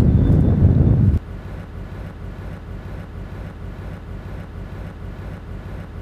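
Loud low outdoor background rumble that cuts off abruptly about a second in, followed by a faint steady low hum for the rest.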